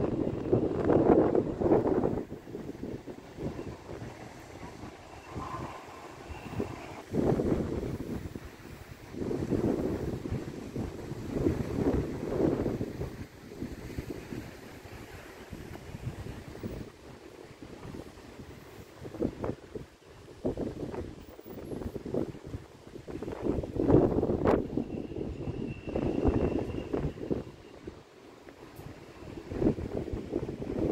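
Wind buffeting the microphone in uneven gusts, swelling and dropping every few seconds.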